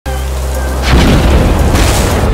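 Cartoon thunder sound effect: a loud rumbling boom about a second in, over steady low sustained tones.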